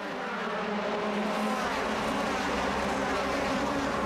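A pack of DTM touring cars with 4-litre V8 engines accelerating at full throttle down the start straight. Many engines sound at once in one blended note that grows slightly louder.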